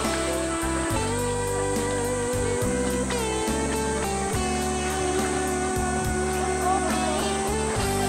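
Instrumental background music: steady held notes that change every second or so.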